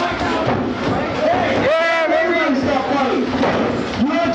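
Several men's voices shouting over one another, with one loud yell a little under two seconds in.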